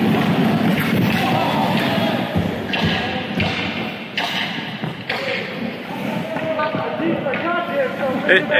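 Ice hockey game sounds in an indoor rink: skate blades scraping the ice, a few stick-and-puck knocks, and players' voices echoing in the hall, clearest near the end.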